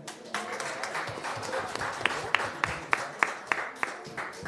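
Audience applauding. From about two seconds in, a few louder claps stand out in an even beat of about three a second.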